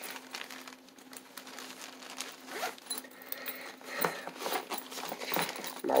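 Zipper on a fabric fanny pack being drawn open and shut in short, irregular pulls, with the rustle of the pack being handled.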